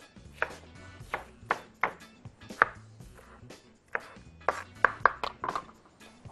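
Kitchen knife dicing red and yellow bell peppers on a wooden cutting board: a dozen or so sharp, irregular chopping strokes, about two a second.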